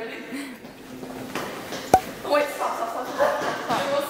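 People's voices and laughter, with one sharp smack just under two seconds in.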